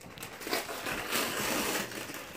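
Gift wrapping paper being torn and crumpled by hand as a present is opened, a rough crackling rustle that gets louder in the middle.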